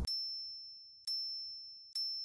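Electronic ding sound effect struck three times, about a second apart; each is a single high tone that rings out and fades.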